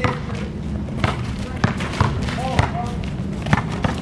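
A basketball dribbled on an asphalt court: a string of sharp, irregular bounces, with voices in the background.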